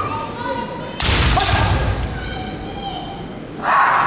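A kendo attack about a second in: a sudden loud stamp of the foot on the wooden floor with the crack of a bamboo shinai strike and a shout (kiai). Another short, loud shout comes near the end as the fencers close in.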